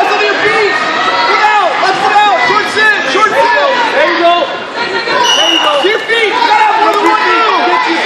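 Many voices at once in a school gym: spectators and coaches calling out and talking over one another during a wrestling bout.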